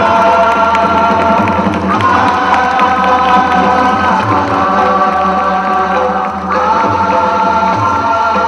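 A group of voices singing a chant over music, in long held notes that shift to a new pitch about every two seconds.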